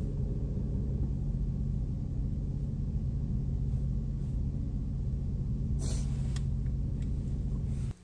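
2002 Jeep Liberty's engine idling, a steady low hum heard from inside the cabin.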